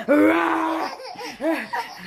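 A toddler laughing: one long high squeal of laughter, then a few short laughs.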